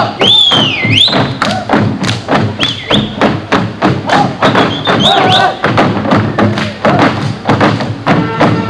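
Folk dancers' boots stamping on a stage in a fast, even rhythm, about four strikes a second, with several high whooping shouts from the dancers. Folk orchestra music plays underneath.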